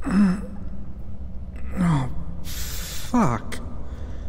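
A man's voice groaning and gasping without words: three short groans that fall in pitch, with a sharp breathy rush just before the last one, over a steady low hum.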